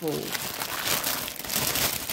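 Clear plastic bag crinkling and rustling as a cross-stitch kit's printed pattern sheets are slid out of it by hand. The crinkle is continuous and made of many small crackles.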